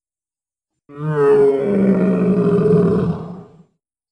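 Dinosaur roar sound effect: one long, pitched roar lasting nearly three seconds, starting about a second in, with a wavering onset before it settles and fades out.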